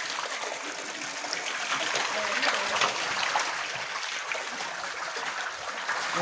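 Water pouring in a steady stream into a shallow fish pond crowded with fish, trickling and splashing continuously.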